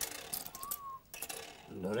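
Small metal religious medals clicking and clinking against each other and the glass tabletop as they are sorted through by hand, with a short ringing clink about halfway through.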